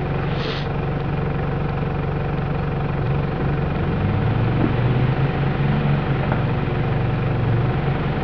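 Off-road 4x4 engine running steadily while the vehicle works along a muddy track, its pitch and loudness swelling a little in the middle before easing back.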